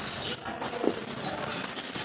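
Dry crumbled mud powder pouring from a hand into a tub: a soft, gritty rustling hiss, with one sharper crackle a little under a second in.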